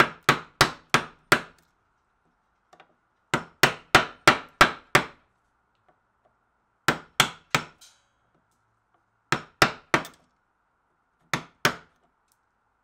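A steel chisel being struck in quick groups of sharp knocks, about three a second, as it chops out the waste between saw kerfs in a wooden guitar neck. The groups run five, six, four, three and two strikes, with short pauses between them.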